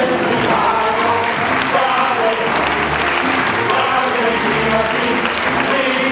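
Audience applauding over music at a curtain call.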